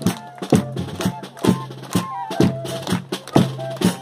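A banda de pífanos playing: two fifes carry a stepping melody over drum and hand-cymbal strokes falling about twice a second.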